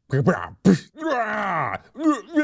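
A man's voice making sound effects by mouth: a short grunt, a sharp noisy burst, then a long groan that falls in pitch.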